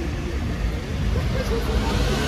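Busy city street ambience: a steady low rumble with people talking in the background.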